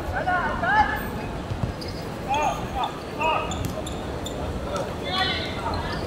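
Footballers shouting short calls across a hard outdoor court, the loudest about a second in, with a few sharp knocks of the ball being kicked and bouncing on the surface.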